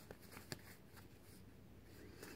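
Near silence: room tone with a few faint clicks from a deck of tarot cards being handled, one sharper click about half a second in.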